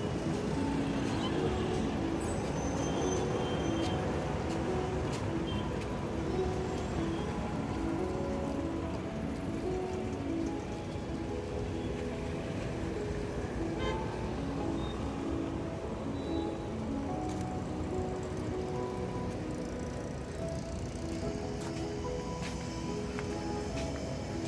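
Background music, a melody of short notes stepping up and down, over a steady bed of city traffic noise.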